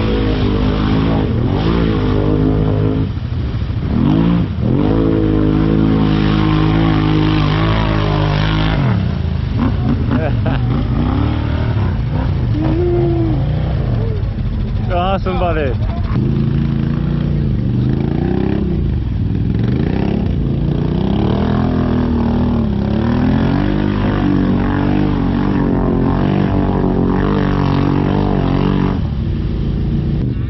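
ATV engine running close to the microphone, its pitch rising and falling again and again as the throttle is blipped, loudest in the first part and then running on with smaller revs.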